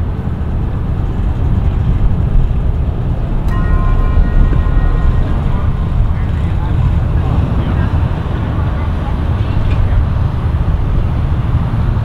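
Sterndrive boat engine running at low speed as the boat backs off its trailer, a steady low rumble mixed with outdoor noise. A brief high tone sounds about three and a half seconds in.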